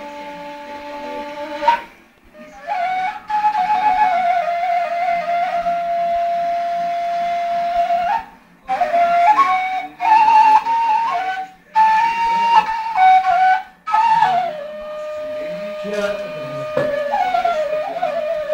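Long wooden end-blown flute played solo: a slow melody of long held notes and short stepping runs, broken by brief breath pauses.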